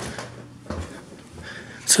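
Dull, muffled thumps of someone banging on the basement ceiling from below, the clearest just under a second in.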